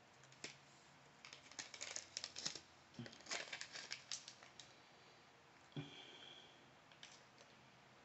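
Small plastic snack bag of almonds crinkling and rustling in the hand, in short quiet bursts of crackle and clicks about a second and three seconds in, with a fainter rustle near six seconds.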